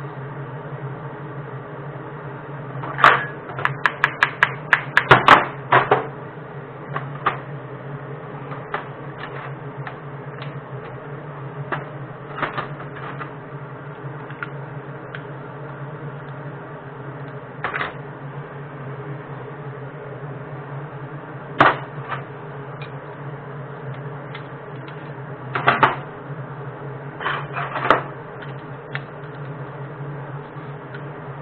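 Metal clicks and knocks from metal casting molds being handled, with a fast run of clicks about three seconds in and then scattered single knocks, over a steady low hum.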